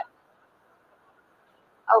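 Near silence with faint hiss, between the end of a woman's word at the start and a short spoken "oh" at the very end.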